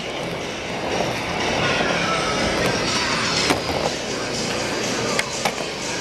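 Skateboard wheels rolling steadily across a wooden floor, with a few sharp clicks, one about three and a half seconds in and two more just past five seconds.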